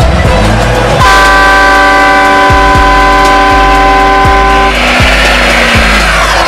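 A multi-tone air horn blows one long, steady blast. It starts suddenly about a second in and cuts off nearly four seconds later, over music with a heavy bass beat.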